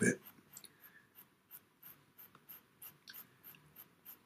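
Pastel pencil scratching on PastelMat paper in short, faint strokes, about three a second.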